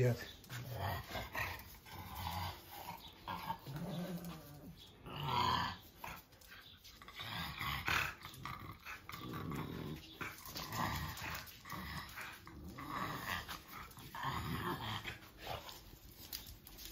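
French bulldogs making short, low growling noises at irregular intervals.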